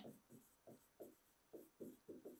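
Faint, quick scratches of a stylus writing a word on an interactive whiteboard screen, about seven short strokes in a row.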